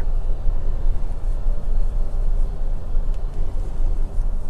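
Steady low background rumble with a faint click about three seconds in.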